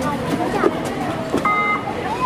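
Overlapping voices of players and spectators talking around the court. A brief steady tone, about a third of a second long, cuts in about a second and a half in.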